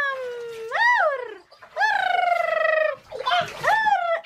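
A young child's high-pitched, wordless squeals and drawn-out calls in three bursts, the pitch rising and falling, the longest held for about a second in the middle.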